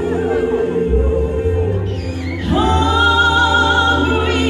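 Live gospel worship music: a group of singers holding a chord over a band with a steady bass. About two and a half seconds in, the voices slide up into a new sustained chord and the music grows louder.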